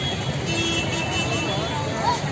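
Busy roadside ambience: traffic noise with background voices and music, steady throughout.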